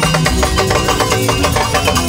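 Live highlife band music: drum kit and bass keeping a steady, dense beat.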